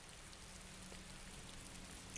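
Faint, steady hiss of background ambience with a low hum underneath and no distinct events.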